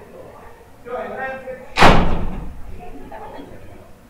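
A door slamming shut: one sudden loud bang a little under two seconds in, dying away over about half a second.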